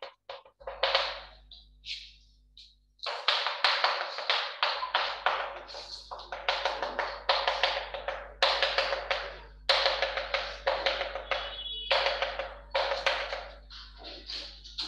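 Chalk tapping and scratching on a chalkboard in quick strokes as dots and dashes are drawn, in irregular runs with short pauses.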